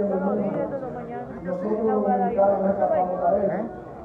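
Indistinct speech: several people talking at once in a large chamber, with a low steady tone underneath that drops out briefly about a second and a half in and again near the end.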